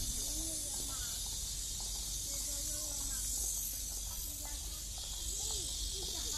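Cicadas in the park trees keep up a steady, high-pitched drone, with a faint low rumble beneath.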